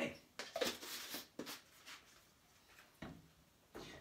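A few short knocks and rustles of a plastic powder tub and a glass jar being handled and set down on a tiled counter, most of them in the first second and a half, with a couple of softer taps near the end.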